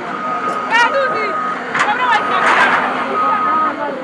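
An earthmover's reversing alarm sounding a steady, high beep about once a second, over people talking. A brief rush of noise comes about two and a half seconds in.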